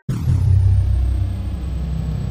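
Logo-reveal sound effect: a deep rumble that starts suddenly and holds steady, with a thin high tone sliding down during the first second.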